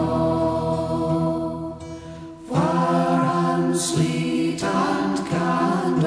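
Unaccompanied folk singing: male and female voices hold slow, drawn-out chords in close harmony. A brief pause for breath comes about two seconds in, then a new chord begins.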